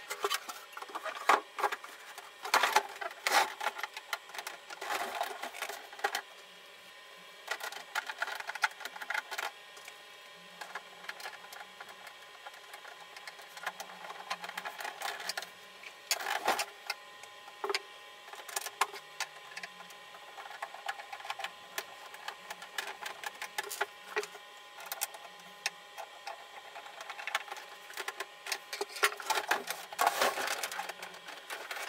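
Irregular clicks, knocks and scrapes of a portable CRT TV's plastic rear cabinet being handled and fitted back onto the set.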